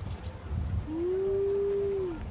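A dog whining: one long, high, steady whine that starts nearly a second in, rises briefly, then holds its pitch.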